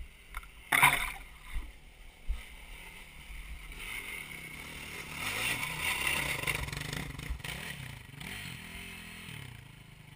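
Dirt bike engine revving up and down on a hill climb, its pitch rising and falling, growing louder after a few seconds and easing off near the end. A few knocks and scuffs come in the first two seconds, the loudest about a second in.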